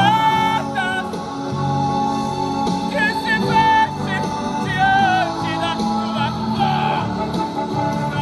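A man singing a gospel song over a recorded backing track, his held notes wavering with vibrato.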